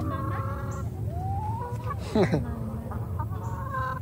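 Chickens clucking and calling, with a loud, sharp, falling squawk about two seconds in.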